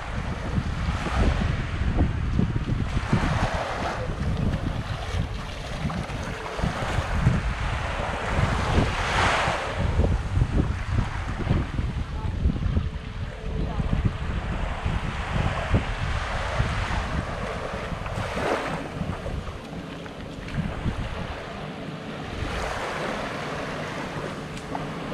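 Small waves washing up and draining back on a sandy shore, the surf hiss swelling and fading every few seconds, with gusty wind buffeting the microphone underneath.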